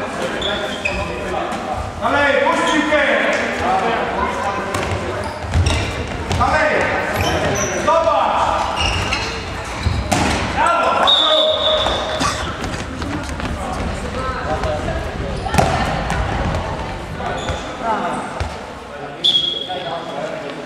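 Indoor handball game in a sports hall: players shouting and calling to each other over the ball bouncing and thudding on the court floor, all echoing in the hall. Two short high-pitched tones sound, one about halfway through and one just before the end.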